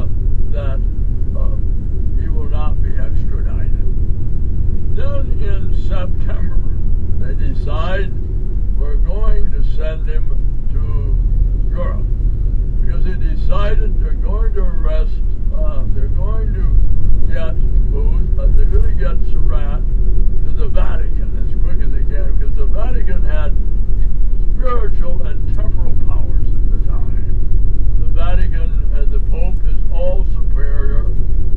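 Steady low rumble of a moving vehicle's engine and road noise, with a voice talking indistinctly over it.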